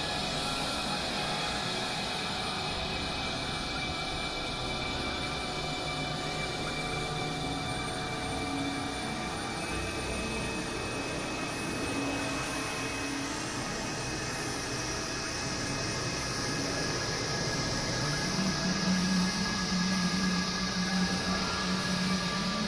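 Experimental electronic synthesizer drone: a dense, steady wash of noise layered with many held tones. A stronger low tone joins about eighteen seconds in, and the sound gets a little louder.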